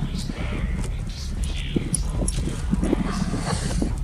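Footsteps and a pack goat's hooves crunching irregularly on loose gravel and rock, over a steady low rumble.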